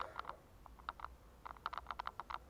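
Faint, irregular sharp clicks, scattered at first and coming in a quick run near the end, over a low steady hum.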